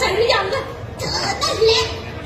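A high-pitched, childlike female voice speaking in short phrases, its pitch sliding up and down in a cartoonish character delivery.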